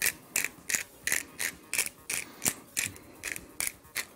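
Hand pepper grinder being twisted, cracking peppercorns in an even run of short grinding strokes, about three a second.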